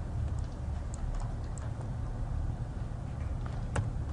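A few scattered computer-mouse clicks over a low steady hum, the sharpest click just before the end.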